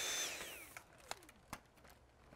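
Dyson V7 Motorhead cordless vacuum's motor whining, then switched off: its high whine falls in pitch and dies away over the first second. A few small plastic clicks follow.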